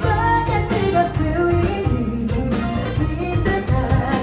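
Live band playing: a woman singing into a microphone over electric guitar, saxophone and drums.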